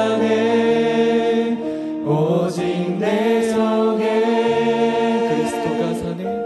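A worship team of several singers singing a slow Korean worship song together, with acoustic guitar accompaniment, in long held notes and a short pause between phrases about two seconds in.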